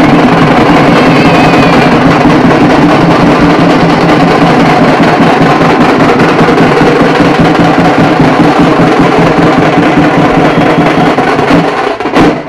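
A group of steel-shelled drums beaten with sticks in fast, continuous drumming, very loud and without a break.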